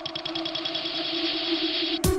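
Build-up section of a 170 bpm breakbeat rave track, with the drums stripped out. A fast roll of repeated pulses and a swelling wash of noise ride over a held low note, growing steadily louder until the full drum beat crashes back in at the very end.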